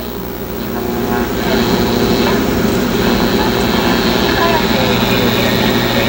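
1960 Philco tube AM radio playing through its speaker: static and a steady hum, growing louder after about a second, with a faint voice from a weak station barely showing through the noise. This is the weak reception of distant stations that the owner suspects comes from a weak IF amplifier or converter tube.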